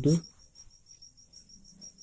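A pen writing faintly on paper, under a steady high-pitched whine, after the spoken word "two" at the very start.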